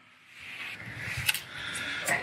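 Someone climbing a rusty steel ladder: scuffing and rustling of shoes, hands and clothes on the rungs, with one sharp knock just past the middle.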